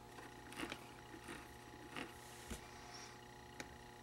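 Quiet room tone with a faint steady electrical hum and a few faint, short clicks.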